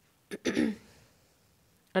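A person clears their throat once: a single short, rasping burst about half a second in.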